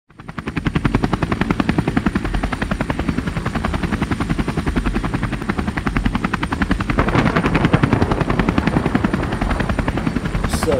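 Helicopter rotor sound, a rapid even chopping of about nine beats a second. It fades in at the start and grows fuller about seven seconds in.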